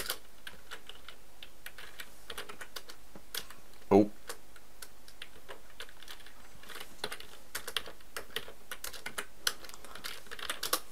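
Computer keyboard typing: a keystroke right at the start, a few scattered key presses, then a quicker run of keystrokes from about 7 s on. About 4 s in, one brief, loud, low sound from the voice cuts in, the loudest thing heard.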